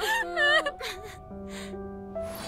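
A cartoon character's voice whimpering tearfully for under a second, followed by a few short gasping breaths, over soft sustained music chords.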